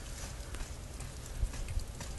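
Low rumble of wind on a phone microphone, with a few faint, irregular crunches.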